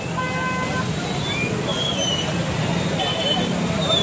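A vehicle horn gives a short toot near the start, over steady street and traffic noise with people's voices.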